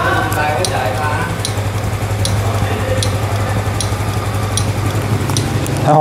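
Turn-signal flasher clicking evenly, about one click every 0.8 s, over the steady idle of a Honda Super Cub 110's single-cylinder engine.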